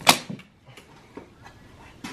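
One sharp snap of a hand staple gun fastening fibreglass insulation to a wooden ceiling joist, followed by faint small ticks and rustling.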